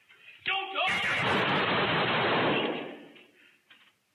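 Police rifle fired in a rapid string of shots, heard through a body-camera recording in a hotel hallway; the reports run together into about two seconds of loud noise that starts about a second in and fades away. A short shout-like sound comes just before the shots.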